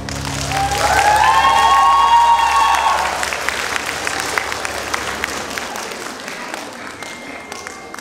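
Audience applauding, with a high cheer from one voice rising and held for about two seconds near the start; the clapping slowly dies down.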